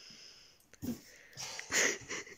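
A person breathing out hard: a short breath just under a second in and a louder, longer one near the end.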